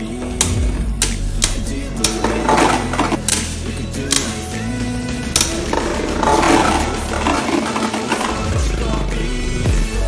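A music track with a beat plays over two Takara Tomy Beyblade Burst tops, God Valkyrie and Sieg Xcalibur, whirring in a plastic stadium. Sharp clacks come at irregular moments as the tops collide.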